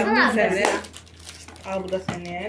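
Voices talking, with the crinkle of plastic being handled and a sharp click about two-thirds of a second in, as a plastic lunch box is turned over and opened. The stretch in the middle is quieter.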